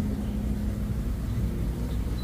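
A steady low hum of background machinery with a faint constant tone and no changes.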